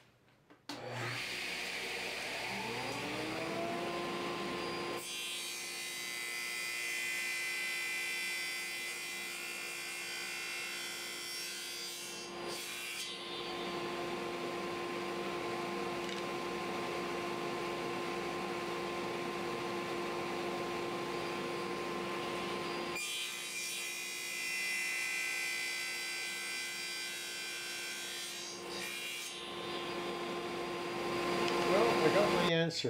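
Table saw starting up, its motor pitch rising over a second or two, then running steadily. From about 5 s to about 23 s the blade cuts the wooden box parts at a 45-degree mitre, with a short break near 12 s, and another brief cut begins near the end.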